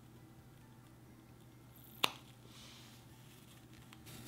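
A mini water balloon snipped with scissors, bursting with a single quiet sharp snap about two seconds in, followed by a brief faint hiss.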